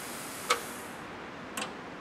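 Two sharp clicks about a second apart from an aviation spark plug tester, typical of the plug being test-fired under pressure in its chamber.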